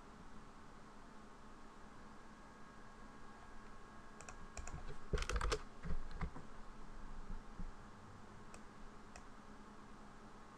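Faint computer keyboard key presses and clicks, bunched together about four to six seconds in, over a faint steady hum.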